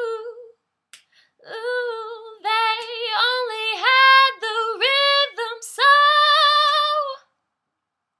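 A woman singing solo a cappella: a short note at the start, then a phrase of several held notes, the last held for over a second before she stops near the end.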